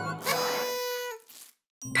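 Bright, shimmering chime sound effect that rings for about a second and fades away, followed by a brief silence.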